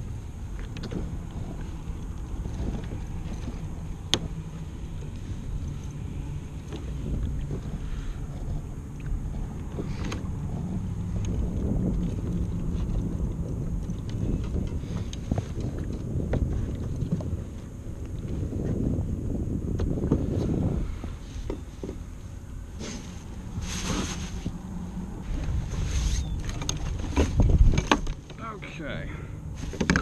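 Wind on the microphone and water lapping at a kayak hull, a steady low rumble, with scattered knocks and clicks from gear being handled that bunch up and grow louder near the end.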